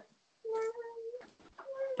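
Two short, high-pitched, held vocal calls, the first about half a second in and lasting under a second with a slight rise at its end, the second briefer near the end.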